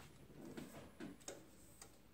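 Near silence: faint room tone with a few light, isolated clicks.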